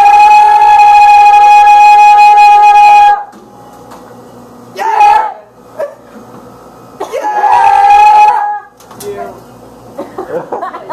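A man's unamplified voice belting a long, very loud high note held steady for about three seconds. A short sung burst follows about five seconds in, then another high held note of about a second and a half near the end.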